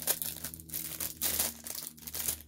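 Clear plastic bag crinkling irregularly as it is pulled open by hand to unwrap a small item.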